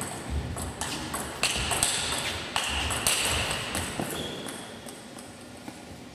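Table tennis rally: the ball clicking off the rackets and the table in quick succession, a few hits a second. The hits stop about four and a half seconds in, when the point ends.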